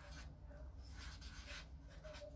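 A pen writing digits on a notebook page: a few faint, short scratching strokes.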